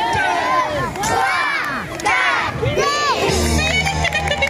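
A crowd of children shouting together in chorus, in surges about once a second, in time with counting aloud to ten on the host's cue. Music with a steady bass comes in near the end.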